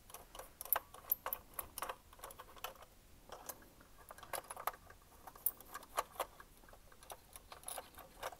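Faint, irregular small clicks and ticks of a precision screwdriver working screws out of a 1:18 diecast model car's chassis while the model is handled.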